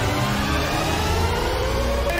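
Sound effect opening the radio show's return bumper: a dense rushing noise with a pitch that slowly rises, played just ahead of the show's intro jingle.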